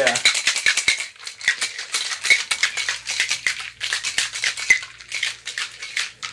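Ice rattling hard inside a metal cocktail shaker as it is shaken vigorously over the shoulder, chilling a peach schnapps and cream liqueur mix. About halfway through, a faint, steady low hum of air conditioning switches on.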